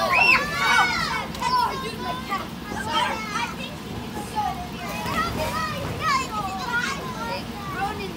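Several children's voices chattering, calling and squealing over one another, with high rising-and-falling squeals in the first second.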